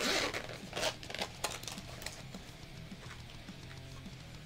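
Zip of a small fabric pencil case being pulled open: a rasping zip about half a second long at the start, then a few short rasps in the next second and a half. Faint background music runs underneath.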